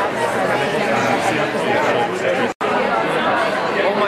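Crowd chatter: many people talking at once, no single voice standing out. The sound drops out completely for an instant about two-thirds of the way through, then the chatter carries on.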